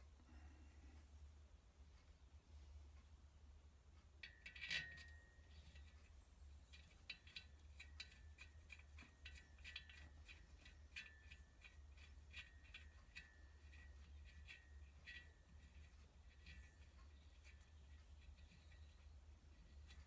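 Faint metallic clinks and ticks of small steel valve-gear parts being handled and fitted on an air-cooled 2CV cylinder head. One ringing clink comes about four seconds in, followed by a long run of light, irregular ticks.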